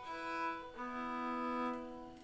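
Nine-string Hardanger fiddle bowed in long held double stops: one chord, then a change about a second in to another with a lower note added. The player is trying the strings to check the tuning after the instrument has taken on moisture.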